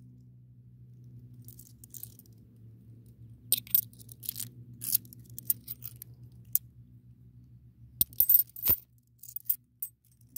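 Australian 50c coins, twelve-sided cupronickel pieces, clinking and sliding against one another as they are picked off a stack held in the hand, in scattered light clinks. The loudest cluster comes near the end. A faint steady low hum runs underneath.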